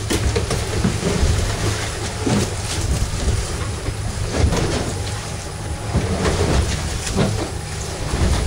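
Wind buffeting the microphone as a steady low rumble, with choppy water splashing against the boat's hull.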